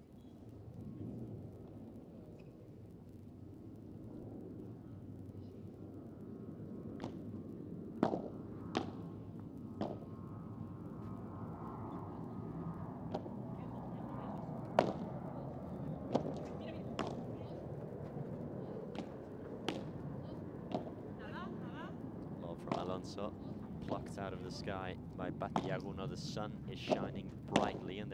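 Padel rally: a string of sharp pops from the ball struck by solid padel rackets and bouncing on the court, irregular at first and coming quicker toward the end, over a low murmur of crowd voices.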